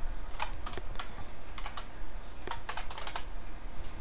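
Computer keyboard typing: irregular keystrokes in short bursts as code is entered, over a faint steady low hum.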